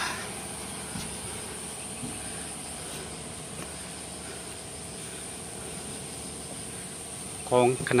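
Steady high-pitched insect chorus, with a few faint knocks or crunches in the first couple of seconds.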